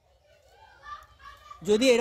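Faint, broken children's voices in the background during a lull in the talk, then a man's speech starting near the end.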